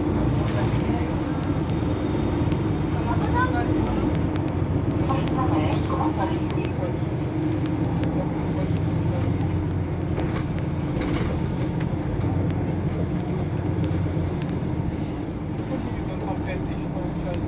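Mercedes-Benz Citaro C2 hybrid city bus idling at a stop, a steady low engine hum that holds even through the whole stretch.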